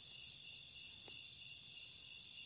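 Near silence with a faint, steady chorus of crickets.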